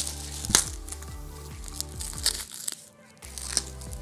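A plastic courier mailer crinkling and tearing as it is handled and slit open with a knife, in a run of sharp crackles. Background music with a steady bass beat plays underneath.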